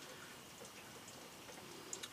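Faint, scattered drips of melting snow outside a window, a few soft ticks over quiet room tone.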